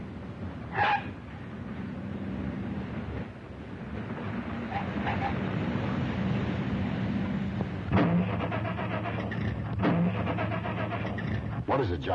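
A late-1930s sedan's engine running along a road, with a short sharp sound about a second in. Near the end it gives two sharp coughs a couple of seconds apart as it starts to falter; the car is running out of gas.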